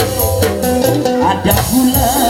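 Loud amplified live dangdut band music: electric keyboard melody over a steady percussion beat.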